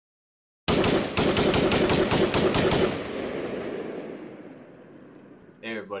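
A burst of rapid automatic gunfire, about two seconds of shots at roughly seven a second, then a long echo dying away.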